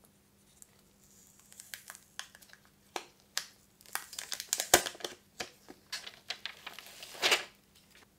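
Clear plastic protective film being peeled off the back of a smartphone, crackling and crinkling in a run of small snaps. There is a sharp snap about halfway through and a short denser crackle near the end.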